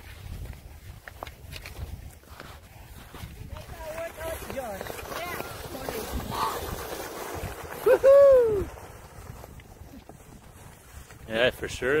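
Wind buffeting the microphone with scattered voices of people out on the ice, and one loud, drawn-out shout about eight seconds in.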